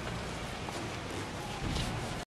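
Ambient room noise inside a large church: a steady hiss of background noise, with a brief scuff near the end.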